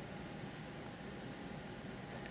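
Faint steady background hiss with a low hum: room tone.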